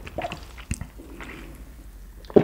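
Soft, close-miked mouth and breath sounds and a few small clicks as a small drinking glass is held up to the lips.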